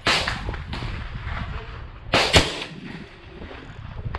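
Gunshots from a Smith & Wesson M&P 15-22, a .22 LR semi-automatic rifle: a sharp crack right at the start, then two more in quick succession a little past two seconds in, each trailing off briefly.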